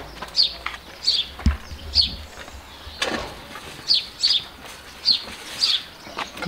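A small bird chirping over and over, short high falling chirps that often come in pairs. A dull thump comes about a second and a half in and a sharp knock about three seconds in.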